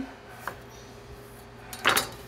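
Knife tapping a wooden cutting board while thinly slicing garlic: a faint tap about half a second in and a sharper knock near the end, over a low steady hum.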